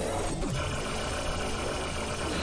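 Cartoon soundtrack: background music over a low, steady rumble.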